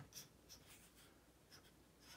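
Black felt-tip marker drawing on paper: several short, faint strokes as the eyes of a caricature are inked.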